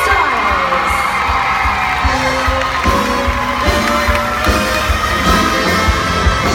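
Stage music with held notes and a steady low beat, under an audience cheering and applauding.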